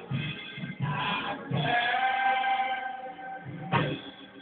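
Live church music: singing with instruments over a steady bass line, with one note held for about two seconds in the middle.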